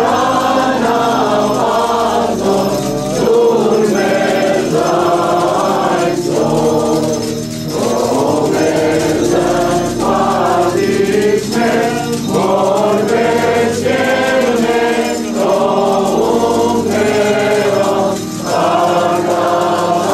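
Choir of women's voices singing an Armenian liturgical hymn, with an electronic keyboard holding sustained chords underneath. The phrases run on continuously with brief breaths between them.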